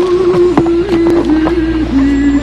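Film score: a single held melody note that steps down slightly in pitch about a second in, with scattered sharp knocks over it.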